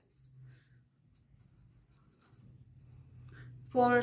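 Pencil writing by hand on paper: faint, short scratching strokes as a few words are written.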